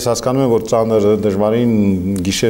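Speech only: a man talking in Armenian.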